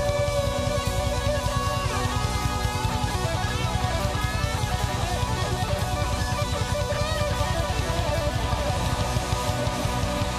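Live neo-progressive rock band playing an instrumental passage: electric guitar lines with bending notes over bass and drums.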